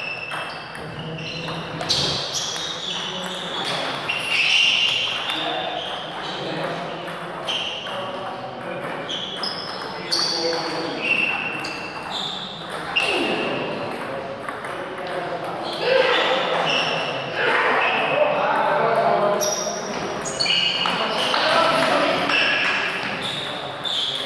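A table tennis ball clicking off bats and the table in quick rallies, the hits ringing in a large hall. Voices of players and onlookers go on throughout.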